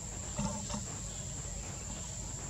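A monkey gives one short call, a pitched note that breaks in two, about half a second in.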